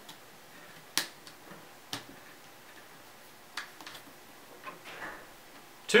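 A few separate small sharp clicks of faceplate screws being handled and set into the plastic housing of a handheld thermometer, the strongest about a second in.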